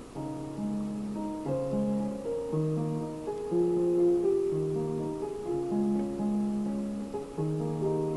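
Yamaha digital keyboard playing a chord progression, held chords changing about every half second to a second with a higher line moving on top.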